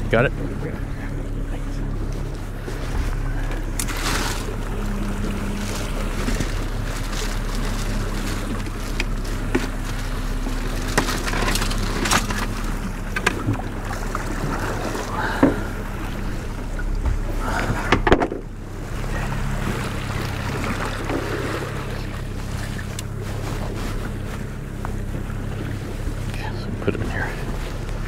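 Boat's outboard motor running steadily, an even low hum that does not change, with a few sharp knocks on the boat scattered through.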